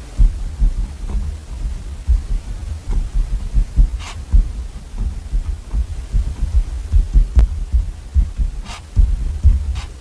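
A pen writing on a small paper card resting on a desk, close-up. It makes an irregular run of soft low thumps as the pen strokes press through the paper, with a few brief scratches of the pen tip, one about four seconds in and two near the end.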